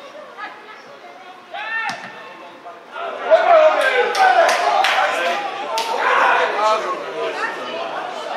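Several voices shouting and talking over each other at a small football ground, with a single rising shout near two seconds, then louder from about three seconds in, and a handful of sharp knocks in the middle.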